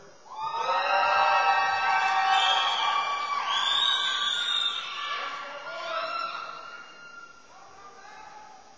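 Several audience members cheering and whooping together for a graduate whose name has just been called. The high held and gliding cries overlap for about five seconds, then die away over the next two.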